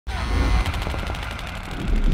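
Rapid automatic gunfire: a fast, even string of shots over a deep rumble, starting about half a second in.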